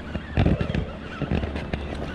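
Low thumps and knocks of handling on a small fibreglass boat while a hooked fish is played on a baitcasting rod, loudest about half a second in, over a steady background with a wavering high whine.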